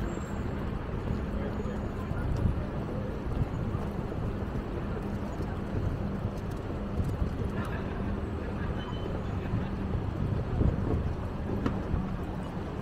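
City street ambience: a steady low hum with traffic and indistinct voices of passers-by.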